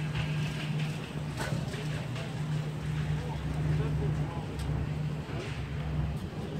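A steady low mechanical hum with rumble beneath it, like an engine running nearby, fading out near the end.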